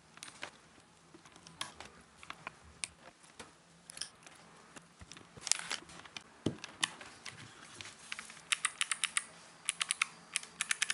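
Keycaps pressed onto clicky Kailh Choc low-profile mechanical switches on a Dirtywave M8, giving scattered light clicks and snaps. Near the end come quick runs of key presses, each switch clicking.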